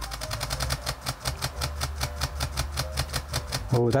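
Olympus OM-D E-M5 Mark II shutter firing a continuous high-speed burst, an even stream of clicks at about ten a second.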